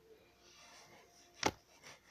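A slap bracelet being handled with a faint rustle, then one sharp snap about one and a half seconds in as the band is slapped against the wrist, failing to wrap on properly.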